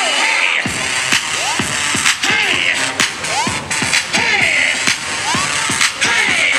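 Electronic dance music with a steady beat of about two strokes a second and swooping, gliding synth sounds. The bass drops out for the first half second, then the beat comes back in.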